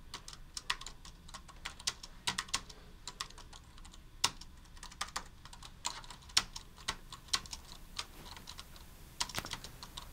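Typing on a low-profile computer keyboard: irregular key clicks, a few louder keystrokes standing out among them.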